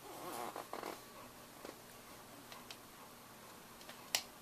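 A dog's low, rattling grumble lasting about a second at the start, followed by a few faint clicks.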